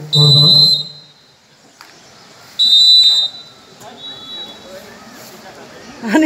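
Referee's whistle in a volleyball match, blown in two short, loud, steady blasts about two and a half seconds apart, with a fainter third blast a second after the second. A loud shout overlaps the first blast.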